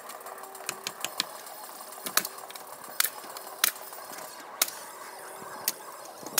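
Irregular sharp knocks and clicks, about ten over the few seconds with the loudest in the middle, from carpentry work on the lean-to's timber rafters overhead.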